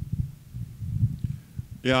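Handling noise from a handheld microphone: irregular low thumps and rumbles as it is gripped and lifted. A man starts speaking into it near the end.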